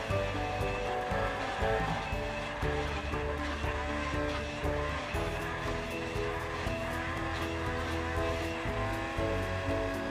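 Background music with held notes and a steady bass, over a countertop blender's motor running as it blends a milky drink.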